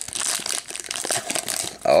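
Foil wrapper of a Pokémon trading card booster pack crinkling as it is handled and the cards are pulled out of it.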